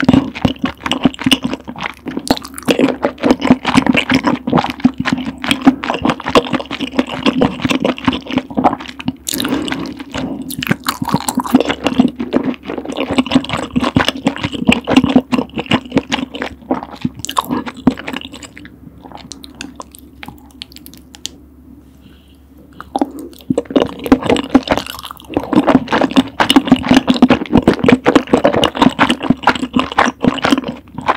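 Close-miked mouth sounds of eating creamy rose tteokbokki: slurping glass noodles, then wet, sticky chewing of chewy rice cakes and noodles. The chewing dies down for a few seconds past the middle, then picks up again.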